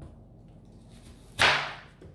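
A kitchen knife chopping once through an onion onto a cutting board: a single sharp chop about one and a half seconds in, fading quickly.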